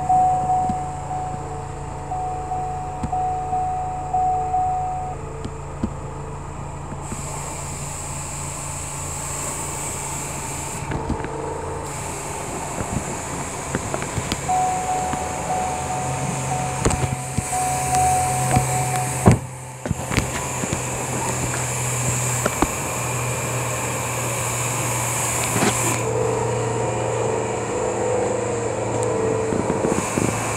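Ford Transit Custom's 2.0 TDCi four-cylinder diesel idling steadily. Over it come bursts of a repeating electronic beep, early on, around the middle and near the end, along with a few clicks and knocks.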